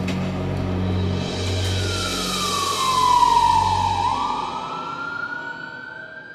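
Ambulance siren wailing: one slow glide down in pitch, then back up about four seconds in, loudest midway and fading toward the end.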